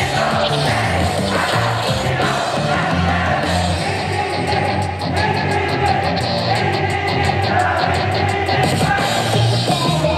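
Upbeat J-pop idol song played loud through a PA speaker, with girls' voices singing along into microphones. A fast, even beat of high ticks runs through the middle of the song.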